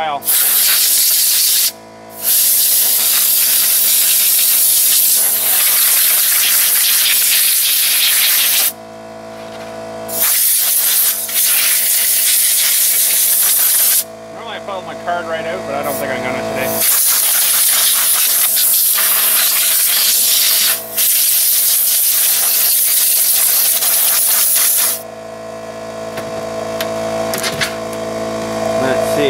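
Compressed air from a blow gun blasting dust out of a desktop PC case in long bursts of hiss, with short pauses about 2 s in, around 9 s, between about 14 and 17 s, and after about 25 s.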